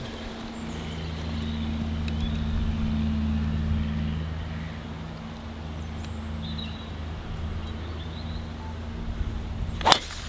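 A golf driver strikes the ball off the tee near the end, a single sharp smack that is the loudest sound. Underneath runs a steady low mechanical drone from a distant engine, swelling a little in the first few seconds.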